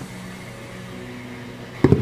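Faint steady hum with a few soft sustained tones, then a single dull thump near the end.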